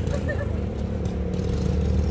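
A motor vehicle's engine running close by, a steady low rumble.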